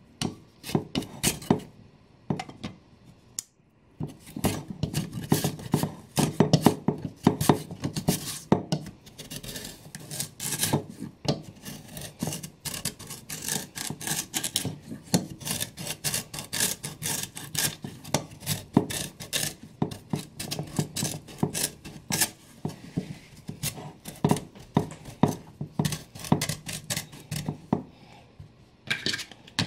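Raw sweet potato being slid back and forth over the steel blade of a mandoline slicer: a few separate rasping strokes at first, then a fast, steady run of strokes from about four seconds in.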